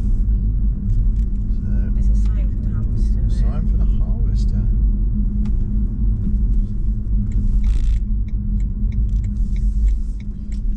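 Steady low road and tyre rumble inside the cabin of a BMW i3s electric car driving at low speed through roundabouts. Near the end a run of quick, evenly spaced ticks, about three a second.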